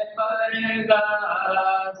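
A man chanting a devotional hymn in long, drawn-out notes, with a short break just after the start.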